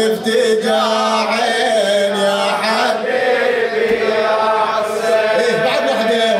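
A man's solo voice chanting a Shia Muharram elegy in Arabic, drawing out long, wavering melodic lines without pause.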